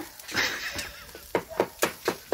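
Sharp, rhythmic knocks at about four a second, starting a little past the middle: kokoreç being chopped with knives on a griddle.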